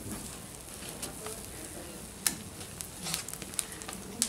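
Quiet kitchen background with a few light, sharp clicks and taps, the strongest about two seconds in, as tortillas are turned by hand on a comal.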